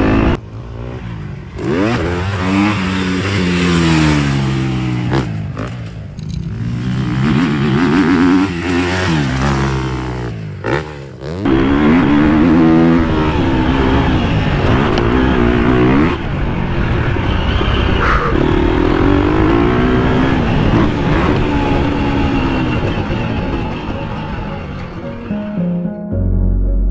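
KTM motocross bike's engine revving hard and rising and falling in pitch as the rider accelerates, shifts and rolls off the throttle around a dirt track, heard from a helmet-mounted camera. It drops back briefly twice, about five and ten seconds in, before pulling hard again.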